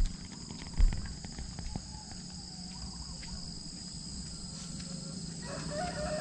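Steady high-pitched chorus of insects such as crickets, with a single dull thump about a second in.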